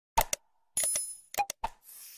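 Sound effects of an animated subscribe reminder: short mouse-click sounds, a brief bell-like chime about a second in, then more clicks and a soft whoosh near the end.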